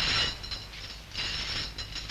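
Hand-pushed oil mill (kolhu) being turned by its bar. Its mechanism gives a run of fine clicks in two spells, one at the start and another after about a second.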